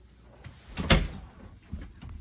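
A closet door knocking shut, one sharp knock about a second in, with a few softer knocks and rustles around it.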